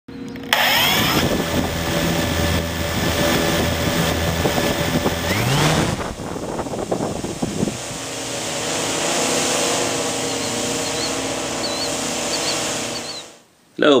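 Intro sound effect with a steady, motor-like hum of several tones that rises in pitch about five seconds in, turns to a rushing noise, then settles into a steady hum and fades out just before the end.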